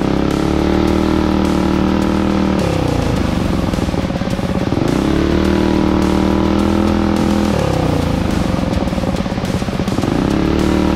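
Minibike engine under way, revving up, holding a steady pitch for a couple of seconds, then easing off; this happens twice, and it revs up again near the end. Music plays underneath.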